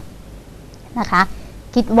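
A woman speaking Thai: about a second of low room tone, then a short spoken phrase, with more speech starting near the end.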